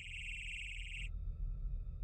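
Steady high-pitched electronic whine with a fine wavering, cutting off suddenly about a second in, over a low steady rumble.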